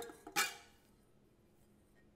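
One short, sharp knock of stainless steel mixing bowls being handled, about half a second in, then quiet.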